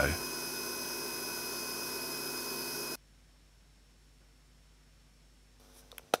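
Toshiba 2 GB PC Card hard drive spinning, a steady whine of several tones over a hiss, which cuts off suddenly about halfway through.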